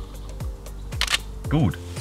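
Background music with a steady, pulsing bass. About a second in comes a single shutter release of a Nikon D3X digital SLR, and a short spoken word follows near the end.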